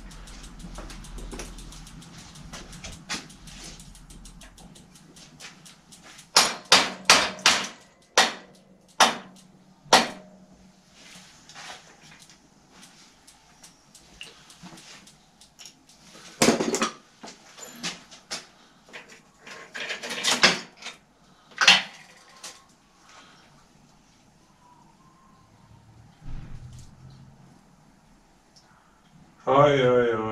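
Hand tools knocking and clinking on the metal of a bicycle crank while it is unbolted: a quick run of five sharp knocks about six seconds in, then scattered single knocks with lighter clicks between.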